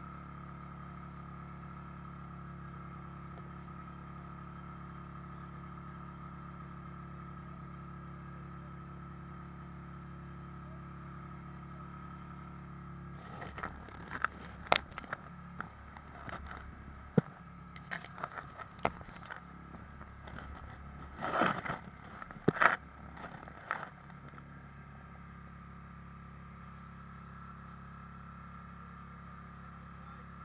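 Snowmobile engine idling steadily. From about halfway through, for around ten seconds, a run of sharp, irregular knocks and clatter sounds over it.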